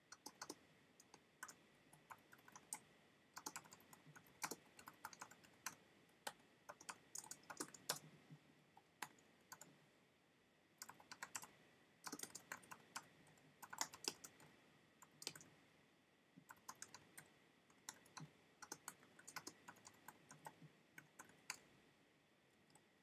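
Faint typing on a computer keyboard: quick runs of key clicks broken by short pauses, about ten seconds in and again near sixteen seconds.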